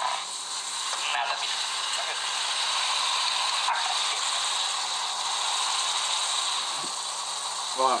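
A steady, rough hissing noise.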